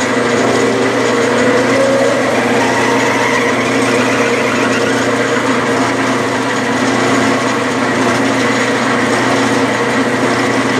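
Metal lathe running at a steady speed with a constant hum and whine from its motor and drive, while a 3/8-inch twist drill is fed into a spinning soft lead blank to counterbore it.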